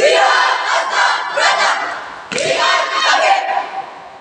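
A group of voices shouting together in unison, in two loud bursts of about two seconds each, the second starting a little past two seconds in.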